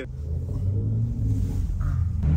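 BMW car engine under way, a low drone that swells over the first half second and then holds steady, heard from inside the car's cabin.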